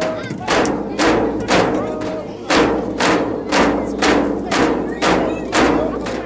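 Alaska Native frame drums struck together in a steady, even beat, about two strikes a second, with a group of voices singing along.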